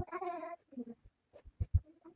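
A short pitched call from a voice, about half a second long, followed by a few soft low thumps.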